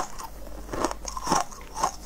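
Close-up crunching as a person bites and chews hard, crunchy food: four crisp crunches about half a second apart.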